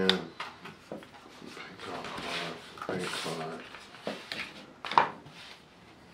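Plastic cards sliding into a slim carbon-fiber pop-up card wallet: scraping as they go in, with several sharp clicks, the loudest about five seconds in. A short murmured voice sound comes about three seconds in.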